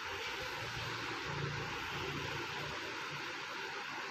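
Steady background hiss with a faint low rumble underneath, even throughout, with no distinct events.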